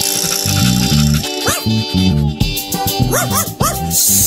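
Cartoon dog barks, short yaps with a rise-and-fall in pitch, over bouncy background music with a plucked bass line; a pair of yaps about a second and a half in, then a quick run of them near the end.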